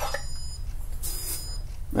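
SuperTrickler electronic powder dispenser buzzing steadily while its vibrating trickle tube primes. A brief hiss about a second in comes as the powder cup is lifted off the scale.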